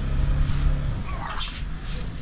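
A man's low, held grunt of effort, lasting about a second, as he heaves a heavy sack of cement up onto his shoulder. It is followed by fainter rustling and scraping of the sack.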